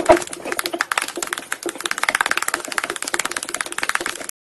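Long fingernails tapping rapidly on a phone, a fast continuous run of sharp clicks, many a second.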